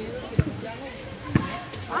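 A volleyball struck by hand twice, two sharp thumps about a second apart during a rally.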